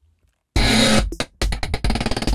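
Field recording of a stairwell heater grate played back chopped into stuttered slices. A noisy burst comes about half a second in, then a quick run of short, choppy repeats.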